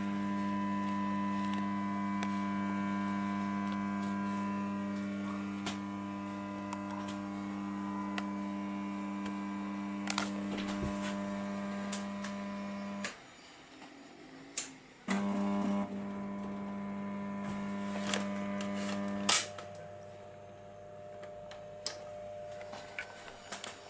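Magnetic ballasts of a bank of 20 W and 40 W preheat fluorescent fixtures giving a steady low mains hum, with a few sharp clicks. The hum cuts out suddenly about 13 seconds in, comes back with a click about two seconds later, and drops away again after another click near the end.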